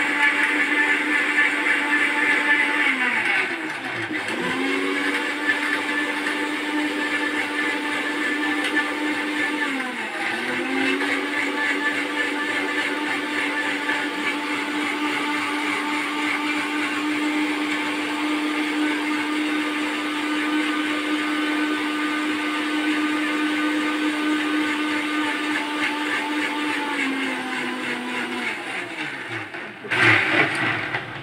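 Philips 750-watt mixer grinder motor running, worked on its pulse button: it drops off and spins back up twice in the first ten seconds. It then runs steadily for a long stretch and winds down to a stop near the end.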